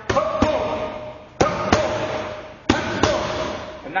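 Boxing gloves and focus mitts smacking together in three quick pairs of sharp hits, about a second apart, with a short ringing echo after each pair.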